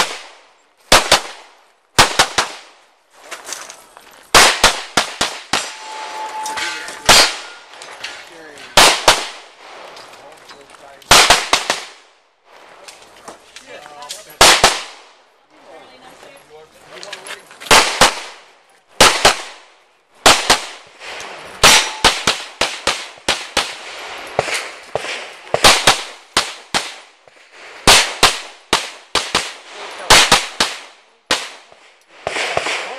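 Pistol gunfire: dozens of sharp shots, mostly in quick pairs and short rapid strings, separated by brief pauses of a second or two. This is a competitor shooting a practical-shooting stage, firing pairs on each target and pausing while moving between positions.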